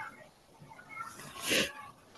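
Faint voice and low background noise over an online-meeting audio feed, with one short noisy burst about one and a half seconds in.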